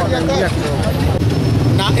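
Voices talking over a steady low rumble of a running vehicle engine.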